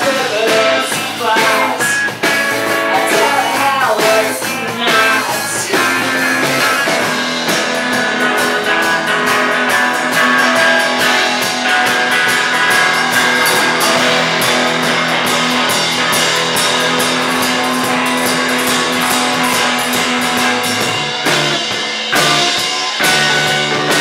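Live rock band playing: a woman sings over electric guitar, electric bass and drums for the first several seconds. The rest is an instrumental stretch driven by bass and drums, with cymbals ringing.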